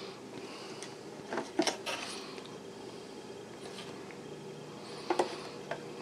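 Fingers handling a desktop motherboard on a wooden desk, giving a few small, sharp clicks and knocks in two clusters, under a faint steady hum.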